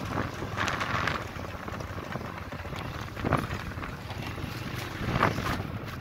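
Wind buffeting the microphone over a steady low rumble, with louder gusts about a second in, a little after three seconds and near the end.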